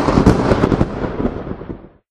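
A thunderclap sound effect: a loud crackling burst of thunder that rumbles and fades away, dying out just before the end.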